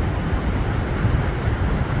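Ocean surf breaking on the beach: a steady rushing noise with a heavy low rumble.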